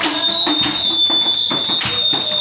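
Live church worship music: drums struck in a loose rhythm with other pitched instruments or voices, and a steady high-pitched tone held throughout.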